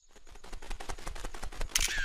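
Cartoon camera sound effect: a fast run of small even clicks that grows louder, then a loud hissing shutter-and-flash burst near the end as the photo is taken.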